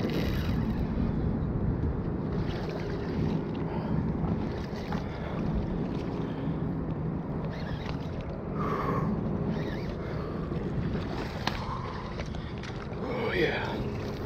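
Water sloshing and lapping against shoreline rocks, with a splash near the start as a hooked striped bass thrashes at the surface.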